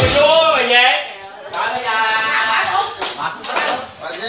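A voice singing unaccompanied, holding a long steady note in the middle, with a single thump at the very start.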